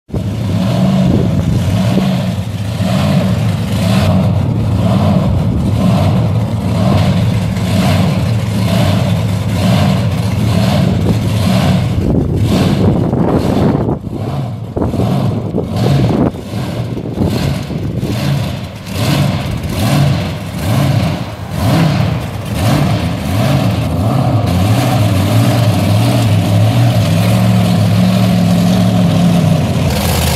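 The Raminator monster truck's big supercharged Hemi V8 idling with a pulsing, uneven lope, then blipped in a series of short revs through the middle, then settling into a steady, heavier run near the end.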